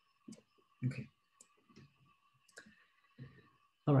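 Several separate computer mouse clicks, spread over a few seconds.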